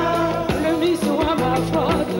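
Live band music: singing over electric guitars, bass guitar and a drum kit, the drums hitting in a steady beat.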